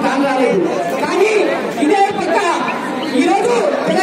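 Men's voices talking over one another, with crowd chatter.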